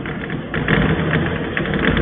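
Chalk writing on a chalkboard: a run of rough scratching strokes as the words are written.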